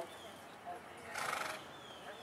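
A horse gives a short whinny about a second in, with a single knock right at the start.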